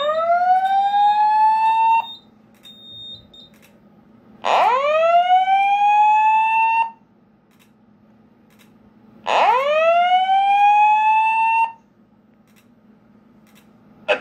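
Fire alarm voice-evacuation speaker-strobe sounding the slow-whoop tone of the old Simplex evacuation message: three rising whoops, each about two seconds long, with a couple of seconds' pause between them. It is the alarm signal from a pulled manual pull station.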